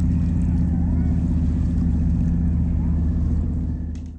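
A steady low droning hum, unchanging in pitch, that cuts off suddenly near the end.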